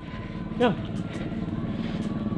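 A vehicle engine running and growing steadily louder, with one short spoken syllable about a third of the way in.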